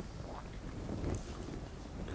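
Low, steady room noise picked up by a lecturer's headset microphone during a short pause in his talk.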